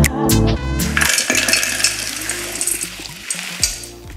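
A few knocks of a rolling pin on hard caramelized hazelnuts in a plastic bag. About a second in, a long clattering rattle follows as the broken caramel-coated nut pieces are poured into a stainless-steel food processor bowl.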